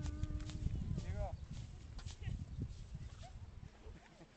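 Low rumbling noise on a handheld camera's microphone, with a held voice note trailing off at the start and a short vocal sound about a second in.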